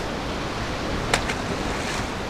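Ocean surf washing over and around rocks, a steady rushing hiss, with one brief sharp click about a second in.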